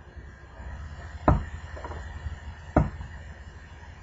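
Two sharp pops about a second and a half apart as an LCD panel is pried away from the strong double-sided adhesive tape holding it in a smartphone frame with a plastic pry tool. Such popping is normal during this step and does not mean the LCD is breaking.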